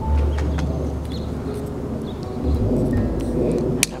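Outdoor garden ambience with a bird calling and a low rumble of wind on the microphone that eases after about two and a half seconds. A single sharp click comes near the end.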